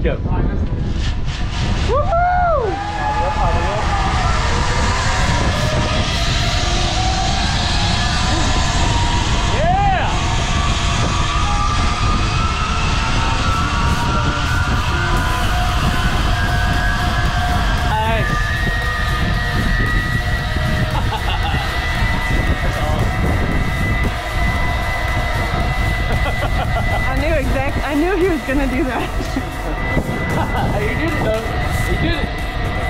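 Zip line trolley whining along the steel cable as a released rider speeds down it. Its pitch rises steadily for about fifteen seconds and then holds. Wind buffets the microphone throughout, with a couple of whoops in the first ten seconds.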